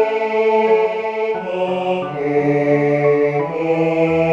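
Choral music from notation-software playback of a four-part mixed choir arrangement: synthesized choir voices hold long, steady notes that change every second or so, over a piano accompaniment, as a tenor part-practice track.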